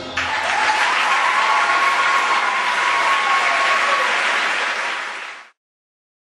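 Audience applauding at the end of a show choir number, cut off abruptly about five and a half seconds in.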